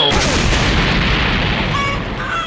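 A cartoon sound effect of a loud boom and rumble from an object crash-landing. It starts suddenly and runs on for about two seconds, with the low end strongest.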